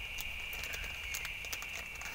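Faint scattered clicks and rustling as a small plastic bag of bolts, washers and inserts is handled, over a steady high hum and a low rumble.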